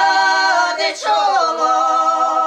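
Three elderly village women singing a traditional folk song together without accompaniment. Their voices hold long notes, then slide down into a new held note about a second in.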